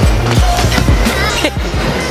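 Stunt scooter wheels and deck rolling and knocking on a wooden skatepark surface, with a sharp knock about a third of a second in and another about a second and a half in, over background music.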